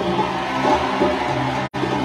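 Live band music with held, sustained notes, broken by a split-second dropout near the end.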